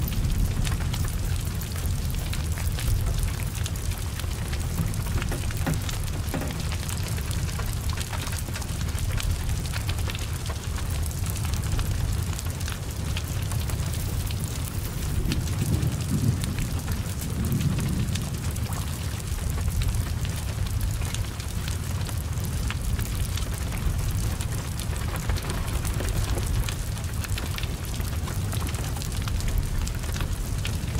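Heavy rain falling steadily, with many small drop ticks and crackles over a continuous low rumble from a large fire burning a car.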